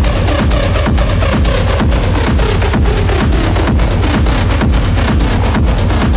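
Techno track at 128 BPM, playing loud with a steady, evenly repeating beat.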